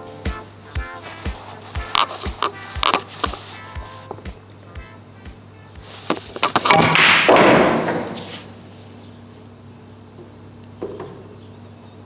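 Background music with a steady beat. Over it, about seven seconds in, comes a pool draw shot: the cue strikes the cue ball, and the balls knock and drop into the corner pockets.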